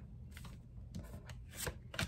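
Tarot cards being handled: a few faint, soft clicks and rustles of card against card.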